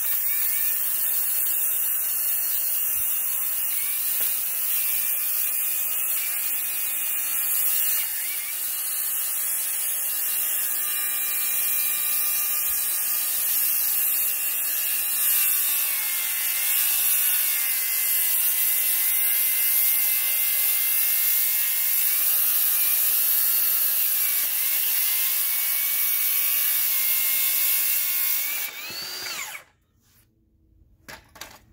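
DeWalt circular saw cutting a long stroke through a treated deck board. The motor runs steadily under load, its pitch wavering as the blade is pushed along. It stops shortly before the end.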